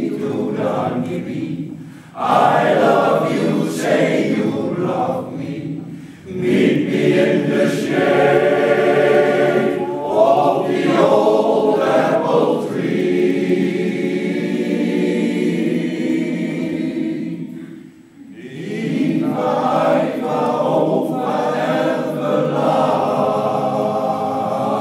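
Male-voice choir singing in parts, held chords with brief breaks between phrases about 2, 6 and 18 seconds in.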